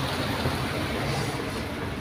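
A steady low rumble of background noise with no clear events.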